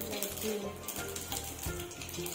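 Whole spices sizzling and crackling in hot fat in a steel frying pan, the tempering (tadka) for dal, with background music playing over it.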